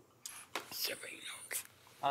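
Quiet, whispered speech, faint and away from the microphone: people conferring in low voices.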